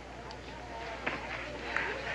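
Faint background voices of people talking, over a low steady hum, with a light click about a second in.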